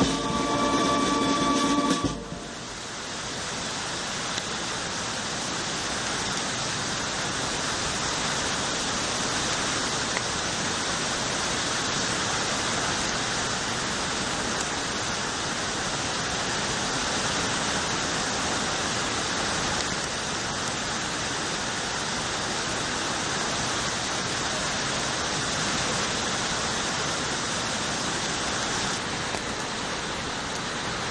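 Steady rain falling, an even hiss. In the first two seconds music plays and then cuts off.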